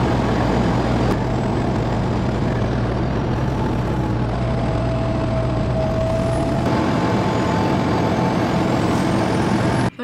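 Semi-truck cab at highway speed: a steady diesel engine drone with road and wind noise heard from inside the cab.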